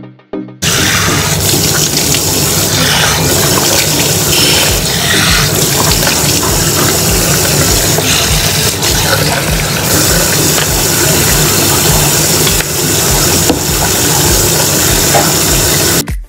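Tap water running into a bathroom washbasin, starting about half a second in and running loud and steady. Background music with a regular low beat plays underneath.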